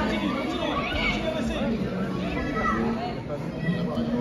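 Indistinct chatter of many spectators' voices overlapping in a sports hall, with no single voice standing out.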